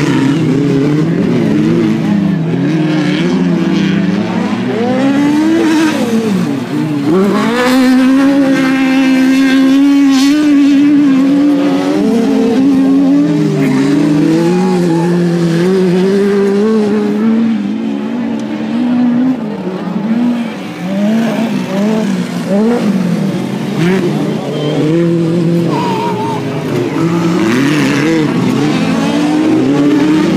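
Autocross buggy engines racing on a dirt track, revving up and falling back as the cars pass and slide through the corner, with a long steady high-revving pull around a third of the way in.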